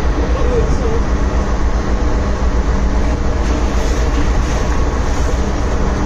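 Steady low rumble with a constant hum from a ship under way at sea: engine and machinery noise mixed with wind on the microphone.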